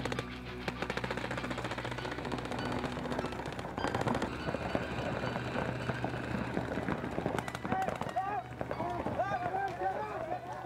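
Paintball markers firing in fast strings of shots over a music soundtrack. Near the end a voice, singing or shouting, rises and falls over the music.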